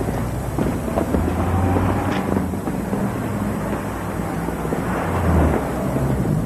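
Steady city street traffic rumble, loud and continuous, with scattered faint clicks over it.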